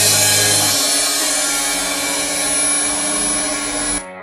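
Crash cymbals on a drum kit ringing out over a held, distorted electric-guitar chord, with no further drum strokes. A low bass note drops out about a second in, and the whole wash cuts off suddenly at the end.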